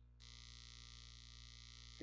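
Near silence: a faint steady hiss over a low electrical hum, the hiss coming in suddenly just after the start.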